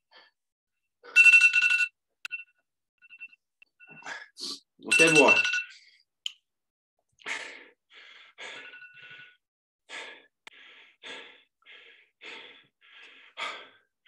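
An electronic beep with two steady tones about a second in, and another about five seconds in that comes with a vocal exhale. After that come hard, rhythmic breaths, roughly one every half-second or so: a person blowing hard after a circuit of exercise.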